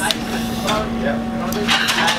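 A woman's short breathy exhales and faint vocal sounds, twice, under a steady low hum.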